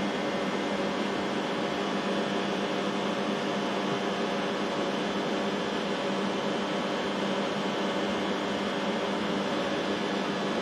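Steady machine hum: an even, fan-like rush of noise with a constant low tone, no rise or fall.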